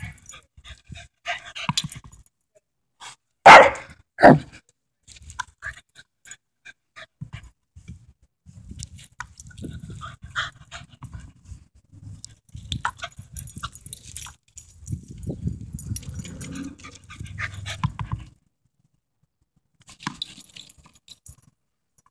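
Small terrier giving two loud barks close together about three and a half seconds in, followed by scattered quieter sounds and a stretch of low rumbling noise lasting several seconds.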